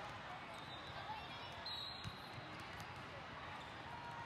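Steady din of a large indoor volleyball hall with faint distant voices, and a couple of dull thumps of balls bouncing on the court floor, about one and two seconds in.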